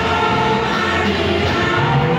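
Church choir singing with music, held sung notes over a steady low accompaniment.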